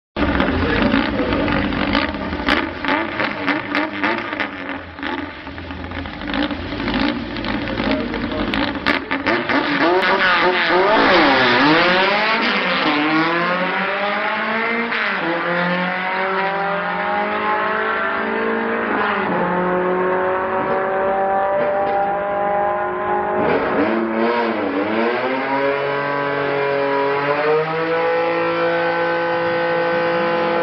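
VW bus engines running on a drag-strip start line: rough and crackly at first, then revved up and down repeatedly, and finally held at steady high revs near the end.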